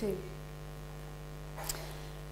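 Steady electrical mains hum in the room's sound system during a pause in speech, with a brief soft breath near the end.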